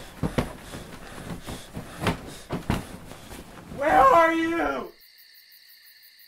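Rustling and soft knocks as bedding is handled, then a short held pitched call about four seconds in. Just before five seconds the sound cuts to faint, steady crickets chirping.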